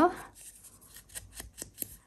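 A series of soft taps and light rustles as a foam ink blending tool is dabbed and rubbed against a small paper envelope, with paper being handled.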